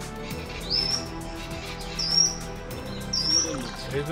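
Background music with a steady, sustained tone, over which a bird gives three short rising whistles about a second apart.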